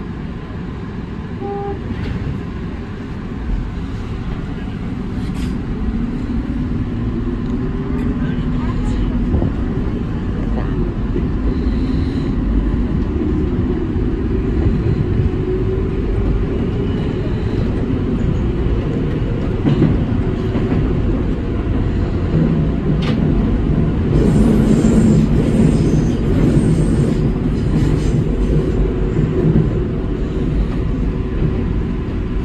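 Electric commuter train pulling away from a station and accelerating, heard from inside the front car behind the driver's cab. A motor whine rises in pitch over the rumble of wheels on rails, growing louder as the train gathers speed.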